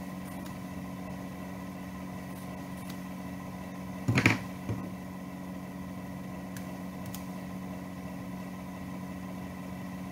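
Steady machine-like background hum with a few fixed tones. About four seconds in comes one brief loud noise, a smaller one just after it, and then a couple of faint clicks from hands working fabric, scissors and needle.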